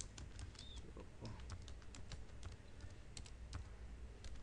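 Faint typing on a computer keyboard: short, irregular keystrokes, about five or six a second.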